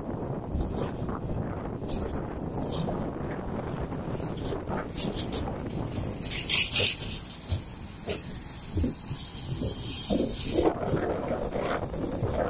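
Road traffic: loaded lorries and a car passing close by on a highway, engine and tyre noise mixed with wind on the microphone, with louder bursts about six and a half seconds in and again near the end.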